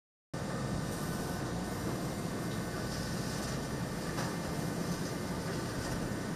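Steady machinery drone and hiss aboard an offshore drilling platform, cutting in suddenly out of silence just under half a second in.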